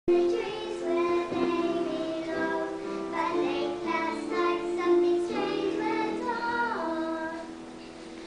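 A group of young children singing a song together, their voices fading slightly near the end.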